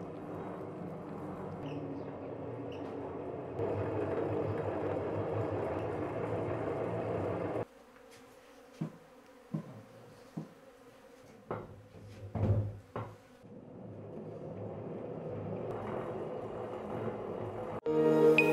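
A steady buzzing hum with a few steady pitched lines in it, which cuts off abruptly about halfway through. A quieter stretch with a handful of short knocks follows, then the hum builds back up.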